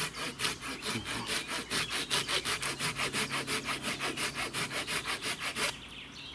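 Silky Gomboy folding pruning saw cutting through a standing trunk of hard, dense hornbeam in rapid, even strokes, about five a second. The sawing stops shortly before the end.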